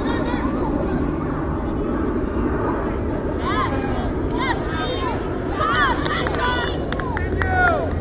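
Players and onlookers shouting short calls across a youth soccer field, thickest in the second half, over a steady outdoor background rumble.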